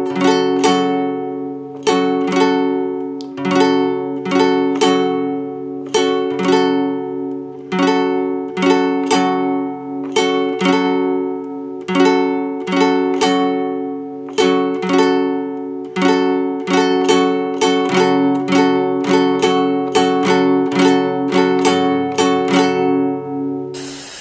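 Acoustic guitar with a capo at the fourth fret, strummed with a pick in a steady down, down, up, up, down rhythm on D minor and A minor chords. A short hiss comes in near the end.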